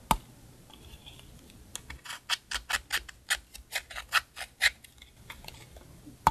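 Small metal tool scraping and tapping pressed eyeshadow in a plastic makeup palette. There is one sharp click just after the start, then about a dozen quick, crisp scrapes at roughly four a second through the middle.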